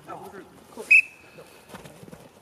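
A single short blast on a coach's whistle about a second in, sharp and loud at first and then trailing off: the signal for the rugby lineout lifters to hoist their jumpers.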